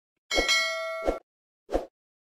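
Sound effects for an on-screen subscribe and notification-bell animation: a click, then a bright metallic ding that rings for most of a second and ends on a second click, then one more short click.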